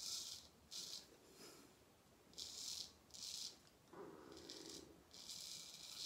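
Wade & Butcher 5/8 full-hollow straight razor scraping through lathered beard stubble in a series of short strokes, about five passes.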